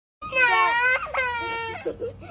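A young child crying out in two long, high-pitched wails.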